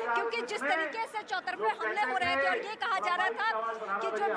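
Crowd chatter: many people talking at once, their voices overlapping without a break.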